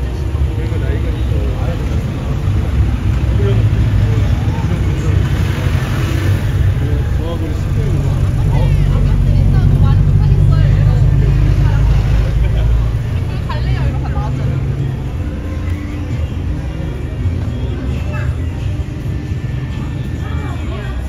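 A car driving slowly past at close range. Its low engine and tyre rumble swells to its loudest from about eight to thirteen seconds in, then fades, with people's voices heard on and off around it.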